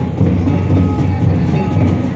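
Santali dance drums beating a fast, steady rhythm.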